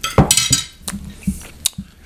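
Glass liquor bottle picked up from the table: a short scrape or rustle, then two sharp clinks.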